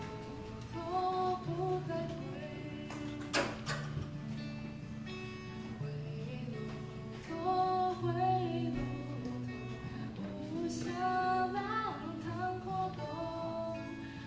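A woman singing a slow song while accompanying herself on a fingerpicked or strummed acoustic guitar.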